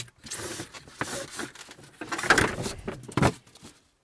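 Plastic seedling plug trays being rummaged through and pulled from a stack: irregular rustling and light clattering, with a sharp click near the end.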